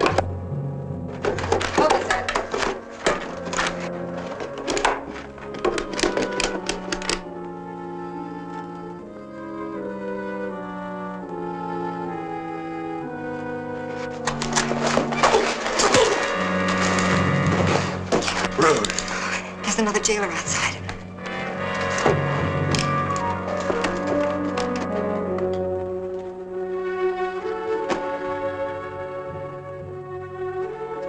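Orchestral film score with brass, carrying dramatic held and stepping notes, over the thuds and knocks of a scuffle that come thickly in the first several seconds and again around the middle.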